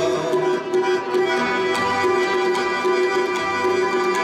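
Sikh kirtan music: harmoniums holding steady reedy notes over a running tabla rhythm.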